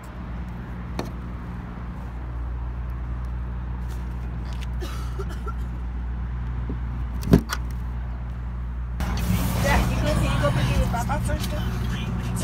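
Tesla Supercharger connector pushed into a Model X charge port, seating with one sharp click about seven seconds in, over a steady low hum. From about nine seconds a louder, busier background with faint voices sets in.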